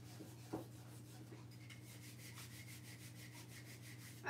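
Fingertips rubbing the paper backing off a Mod Podge photo transfer on a wooden sign: a faint, steady rubbing, with one soft knock about half a second in.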